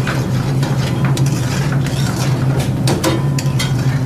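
Steel ladle stirring butter chicken in thick gravy in a pan on a gas burner, with several short clicks of the ladle against the pan. A steady low hum runs underneath.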